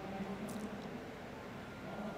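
Faint background noise of a large indoor riding hall with a low steady hum and one brief faint click about half a second in.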